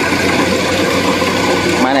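Kubota rice combine harvester's diesel engine running steadily under load as the machine cuts and threshes rice. A voice starts just before the end.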